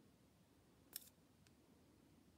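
Near silence, broken by one short crisp click about a second in and a fainter click about half a second later.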